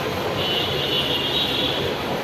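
Steady, fairly loud rumbling background noise, with a thin high tone entering about half a second in and holding for over a second.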